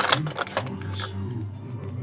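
A few sharp plastic clicks right at the start as a pup figure is pressed into a Paw Patrol toy airplane's cockpit, then soft background TV music.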